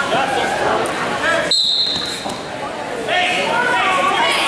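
Crowd chatter echoing in a gymnasium during a wrestling match. About halfway through, a referee's whistle blows once, a short steady high note, as the wrestlers start wrestling.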